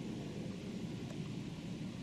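Faint, steady background noise: a low, even rumble and hiss with no distinct sounds in it.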